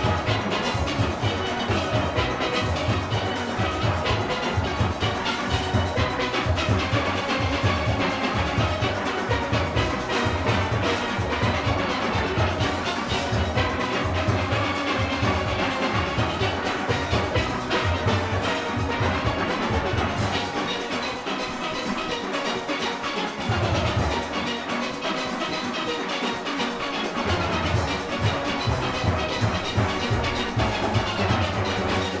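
Full steel orchestra playing live: many steelpans with drum kit and percussion, the bass pans pulsing steadily. The bass drops away for several seconds past the middle, then comes back in near the end.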